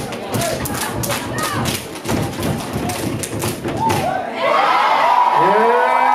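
A dance track with heavy, hard-hitting beats plays under the routine, then cuts off about four seconds in. The audience breaks into loud cheering and screaming.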